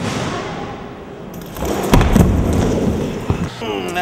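A failed drop-in on a skate ramp: a loud, heavy thud about two seconds in as the rider and board slam onto the ramp, then a single sharper knock a second later. A man starts talking near the end.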